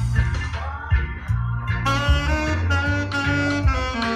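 Alto saxophone played live over a backing track with a deep, pulsing bass line; the sax moves through a sliding phrase, then holds a long low note near the end.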